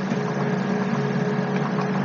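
Steady hiss with a low, constant electrical hum underneath: the microphone and room noise of a home narration recording, with no speech.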